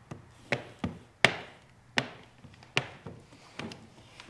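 Sharp, separate clicks and taps, about six in four seconds with the loudest a little over a second in, from hard plastic window-tint tools knocking against the door glass and window seal as the film edge is worked down.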